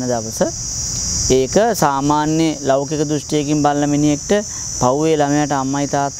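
A steady, high-pitched insect chorus, one continuous shrill drone that does not let up, beneath a man's speaking voice.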